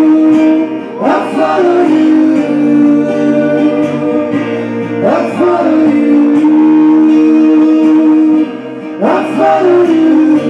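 Live acoustic duo: two male voices singing long held notes over strummed acoustic guitars, with a sliding vocal phrase about every four seconds.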